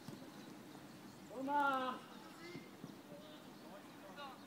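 One loud shouted call from a person at the football pitch, rising and then held for about half a second, about a second and a half in, with faint voices around it.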